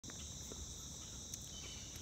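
Steady, high-pitched chorus of insects, unbroken throughout, over a faint low outdoor rumble.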